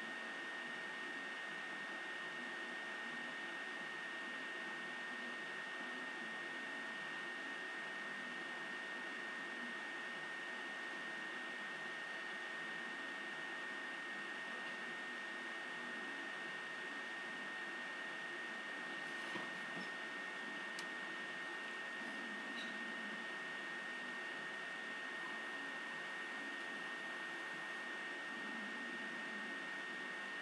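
Steady room hiss with a thin, high, steady whine running under it, and a few faint clicks about two-thirds of the way in.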